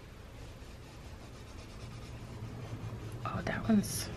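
A Dina Wakley olive scribble stick, a water-soluble crayon, rubbing across sketchbook paper as a faint, scratchy drawing sound. Near the end there is a soft murmured voice and one short sharp click.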